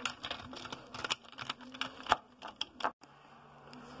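Irregular light clicks and taps of toys being handled: a plastic figure and a toy car knocked and moved about on a wooden surface. About three seconds in the clicking stops abruptly, leaving a faint steady hum.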